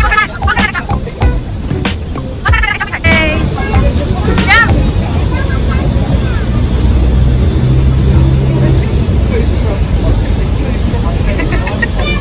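Young children shouting and squealing a few times in short bursts during the first few seconds of play on a bouncy castle. A steady low rumble then takes over.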